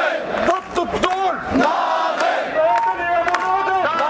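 A crowd of protesters shouting slogans in unison, with a lead voice through a megaphone, in long, held phrases one after another.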